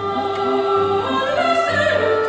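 Operatic singing with orchestral accompaniment, the sung line climbing in pitch about halfway through.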